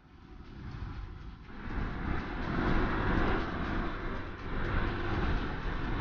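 Motorcycle riding on a wet road in the rain: engine, wind and road noise, low at first and building up from about a second and a half in.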